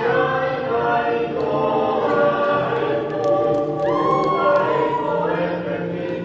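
A group of voices singing a Tongan song in harmony, with long held notes, as accompaniment to a solo dance.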